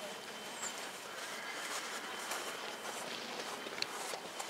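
A horse's hoofbeats on sand arena footing, faint against a steady background hiss of outdoor noise, with a brief sharp click shortly before the end.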